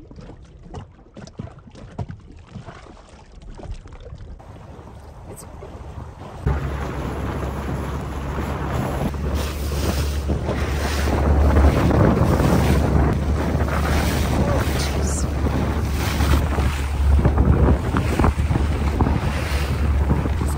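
Wind buffeting the microphone and water splashing along the hull of an inflatable dinghy running fast through choppy sea, starting suddenly about six seconds in and carrying a heavy low rumble. Before that, a much quieter stretch of water noise with scattered small knocks.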